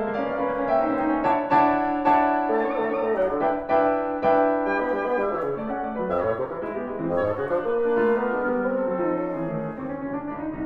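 Chamber trio of piano, oboe and bassoon playing classical music: piano chords under a long held reed note in the first half, then moving lines.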